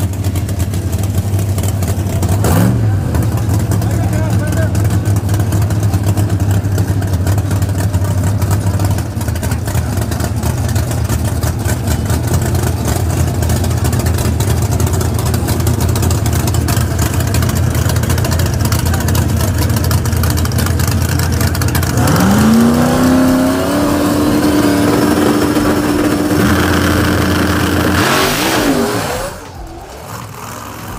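Drag race car engines running loud and steady at low revs. About three-quarters of the way through, one engine revs up and holds a steady higher note for several seconds. Near the end the engine sound drops away.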